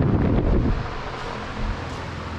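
Low rumbling noise on a handheld action camera's microphone as it is carried, loudest in the first half-second, over a steady hum.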